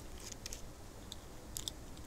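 Faint, scattered small clicks and scrapes from a Speedball linoleum cutter's handle as its top is unscrewed by hand to release the blade. The screw is stuck with dried pumpkin and rust.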